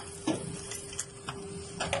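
Holweg RY2-TS bag-making machine running: its linkages and cam-driven arms clack in a quick, uneven series over a steady hum.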